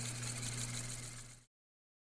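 Cassette player sound effect: a steady low motor hum with tape hiss over it, which fades and cuts off about one and a half seconds in.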